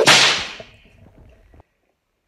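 A whoosh sound effect from an animated subscribe title in a video outro: a sudden loud hit that fades away over about a second.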